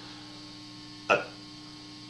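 Quiet room tone with a steady hum under a pause in speech, broken once about a second in by a short spoken 'I'.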